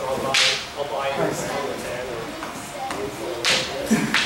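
Long wooden practice staffs in stick-fighting sparring, giving two sharp whip-like swishes or strikes, about half a second in and again near the end, with a voice briefly in between.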